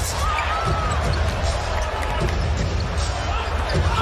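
Basketball game broadcast sound from the arena: a steady crowd din with a deep low rumble underneath and on-court sounds of the ball and players.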